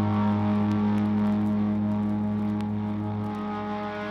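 Punk record playing: a held, distorted electric guitar note rings out as a steady drone with no drums, fading slowly toward the end.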